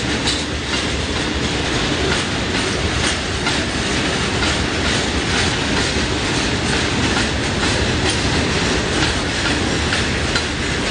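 Wagons of a long iron ore freight train rolling past, their wheels clattering over the rail joints in a steady stream of clicks and knocks.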